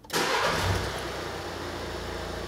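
A 2016 Volkswagen Caddy's turbocharged engine starting with a turn of the key: it catches at once, runs up briefly, and about a second in settles to a steady idle.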